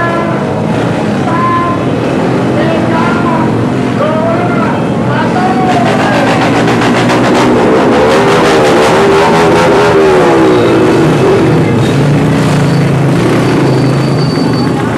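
Many small motorcycle engines running and revving together as a convoy pulls away, with shouting voices over them. The engine noise builds to its loudest in the middle.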